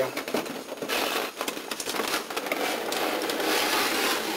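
Cardboard toy box being handled as its contents are slid out: continuous rustling and scraping with small clicks.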